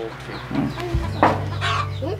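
Chickens clucking, several short calls over a low steady hum.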